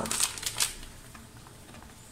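Plastic seasoning packet crinkling, with a few quick rustles in the first half-second or so as dry seasoning is shaken out of it.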